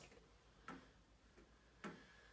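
Near silence with two short, faint clicks, one a little under a second in and a slightly louder one near the end.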